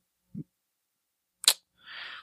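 A pause in close-miked talk: silence broken by one short, sharp click about one and a half seconds in, then a soft breath just before speech resumes.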